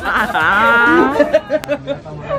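A man's long, drawn-out vocal groan: its pitch dips and then holds level for about a second. It is his reaction to a shot of strong homemade pálinka, and short bursts of laughter follow it.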